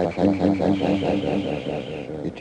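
A man's recorded speech chopped into a fast, even stutter, about ten repeats a second, so that a held vocal pitch becomes a buzzing, machine-like drone.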